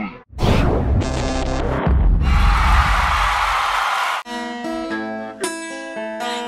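Music: a loud, dense passage for about four seconds, cut off suddenly, then clear plucked guitar notes.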